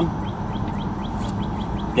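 A bird giving a rapid, even series of short, faint chirps over a steady low outdoor rumble.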